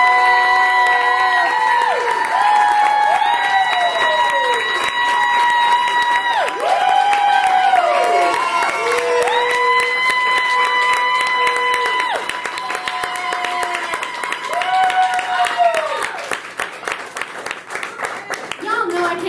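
Small audience applauding and cheering, with many voices holding long high 'woo' calls that drop in pitch as they end. The cheering dies down over the last few seconds.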